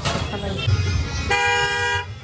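A vehicle horn sounds once, a steady held blare starting a little past halfway and lasting well under a second, over a low steady rumble.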